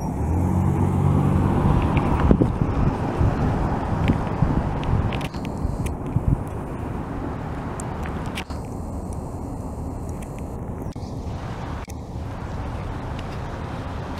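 Outdoor road traffic: a vehicle engine hum is loudest over the first few seconds, then it fades into a steady background traffic noise.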